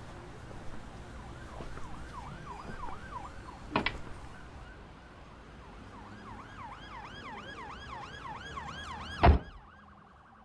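A fast-warbling yelp siren wails in the background, its pitch sweeping up and down about four times a second. It fades out midway and returns. A sharp thump comes about four seconds in, and a louder, heavier thump near the end is the loudest sound.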